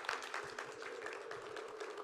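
An audience applauding, fairly quiet, many irregular claps over a steady hum.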